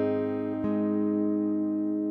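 Acoustic guitar notes ringing and slowly fading, with one more note plucked about half a second in: a song's closing chord dying away.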